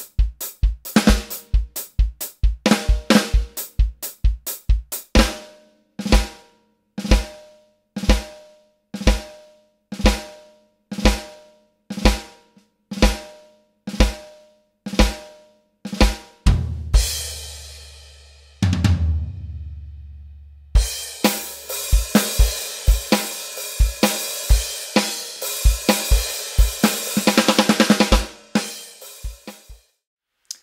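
Electronic drum kit played alone. It opens with a beat, then single kick-and-snare hits about once a second for ten seconds, then two crashes left to ring out. After a short pause comes a busy beat with cymbals, ending in a quick fill.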